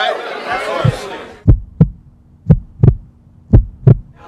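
Crowd chatter fades out and a heartbeat sound effect comes in: three deep double thumps, lub-dub, about one beat a second, over a faint steady low hum.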